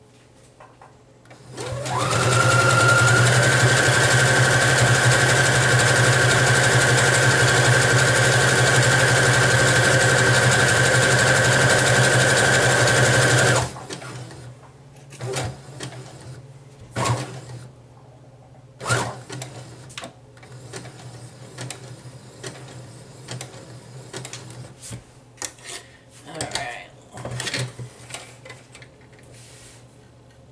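Brother electric sewing machine stitching fast and steady for about twelve seconds, its whine rising as it comes up to speed and then cutting off suddenly. After it stops come scattered small clicks and knocks.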